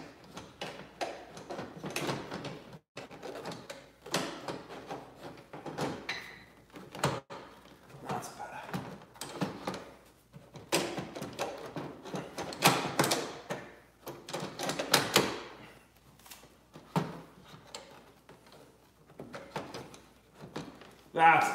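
Irregular plastic clicks, knocks and rattles as a Porsche 991 tail light is pushed and wiggled against the body, trying to seat. It won't slide in properly because a mounting bolt was done up a little too tight. The loudest knocks come in the middle of the stretch.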